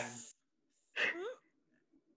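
The clipped end of a spoken word, then about a second in a short, breathy laugh with a rising pitch.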